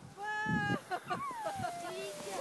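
A child's high-pitched squeal while sledding: a short held note, then a long call sliding down in pitch over about a second.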